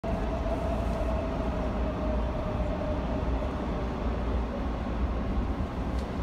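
Steady low rumbling noise with a faint whine above it that slowly sinks in pitch.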